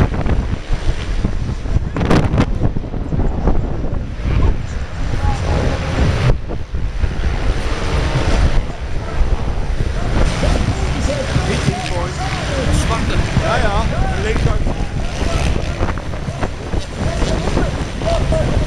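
Storm wind buffeting the microphone: a loud, gusty rumble that rises and falls unevenly. Voices come through faintly in the second half.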